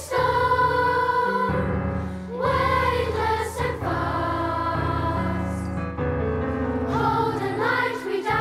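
A children's choir singing together, accompanied by piano and strings, with sustained low accompaniment notes that shift to a new pitch every second or so.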